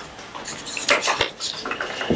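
Light clinks and taps of small hard objects on a table, a few sharp ones clustered about a second in, over low room noise.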